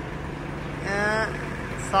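A steady low mechanical drone, like an engine running, with a short spoken word about a second in.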